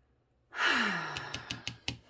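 A woman's long, breathy sigh, falling in pitch, starting about half a second in and fading. Several light taps of a fingertip on a tarot card come over its end.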